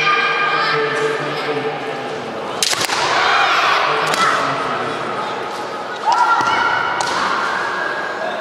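Kendo fencers' high, drawn-out kiai shouts, rising in pitch, with the sharp cracks of bamboo shinai striking each other and the armour, and stamping feet: a quick cluster of hits about two and a half seconds in, single cracks near four and seven seconds, and a long rising shout about six seconds in that is held to the end.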